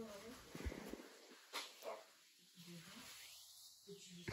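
Faint cooing and small vocal sounds from a young baby, with soft rustling of cloth as the baby is dressed.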